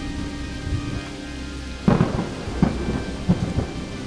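Heavy rain with a thunderstorm: steady rain with low thunder rumbling, a louder thunderclap about two seconds in and a few smaller cracks after it.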